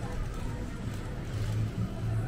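Street ambience: a steady low rumble with faint voices of passersby mixed in.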